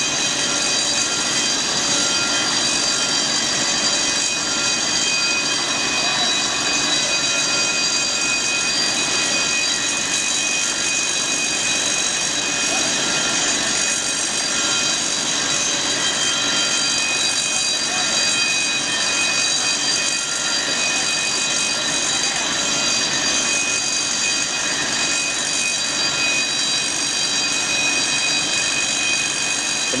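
High-expansion foam generators running steadily at full discharge: a continuous rush of air with several steady high whining tones from the fans.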